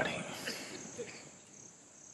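A faint, steady high-pitched chirring of insects, like crickets, in the background during a near-quiet pause. The tail of a man's voice fades out at the start.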